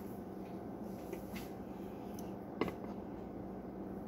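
Mouth sounds of someone chewing a mouthful of dry raw cornstarch: a few soft clicks and crunches, the sharpest about two and a half seconds in, over a steady low hum.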